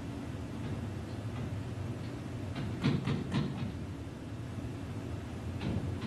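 Steady low room hum, with a cluster of soft taps about three seconds in and a couple more near the end as a stylus writes on a touchscreen.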